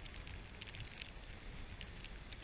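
Light rain pattering: irregular small ticks of drops over a low steady rumble.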